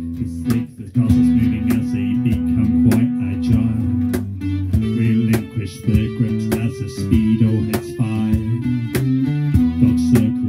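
A live band playing an instrumental passage of a song, led by a strummed acoustic guitar over an electric bass guitar, with no vocals. The playing eases briefly just after the start, then carries on at full level.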